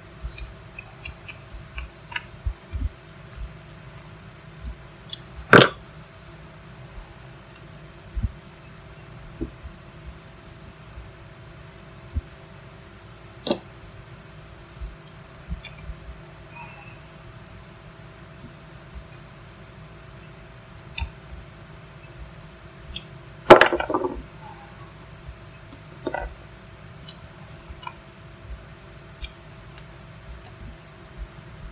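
Scattered small clicks and knocks of a 30-amp twist-lock generator plug being assembled by hand, its housing screws tightened and the plug and cord handled. There is a sharp knock about five seconds in and a louder clatter of several knocks about three-quarters of the way through, over a faint steady hum.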